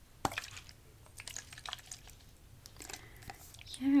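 Close-up small clicks and light ticks from a body spray bottle being handled at its cap and nozzle, with one sharper click about a quarter second in. A short spoken 'yeah' comes at the very end.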